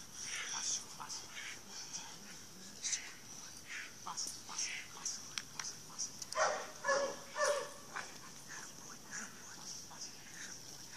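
A dog vocalising during protection bite work against a decoy, with short pitched calls loudest between about six and eight seconds in, amid scattered scuffing and clicks of the struggle, over a steady high hiss.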